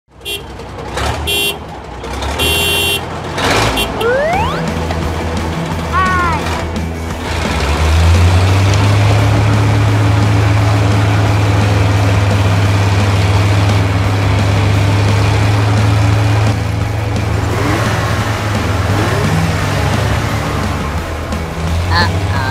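A short intro jingle with rising whooshes, then a steady low engine-like drone that carries on under background music.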